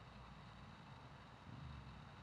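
Near silence: faint outdoor background with a low rumble that swells slightly about a second and a half in.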